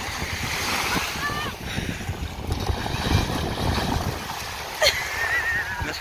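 Shallow sea water and small waves lapping and sloshing, with wind on the microphone. Faint voices are in the background, and a high wavering voice cries out near the end.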